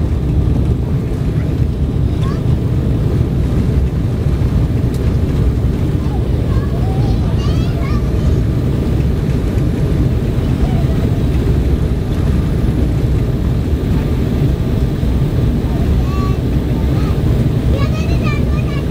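Steady low rumble inside an Embraer 190 cabin during the landing rollout: the jet's engines and the wheels on the runway, heard through the fuselage with the wing spoilers raised. Faint voices are heard under it.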